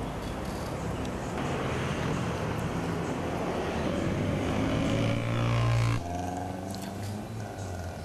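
Street traffic of motorcycles and cars passing. One engine grows louder and rises in pitch, then the sound cuts off abruptly about six seconds in.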